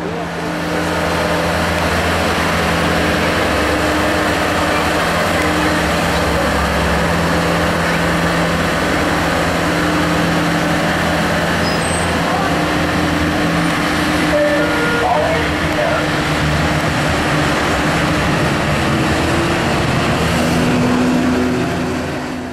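Heavy diesel engine of road-works machinery running steadily at constant speed, its note shifting slightly near the end.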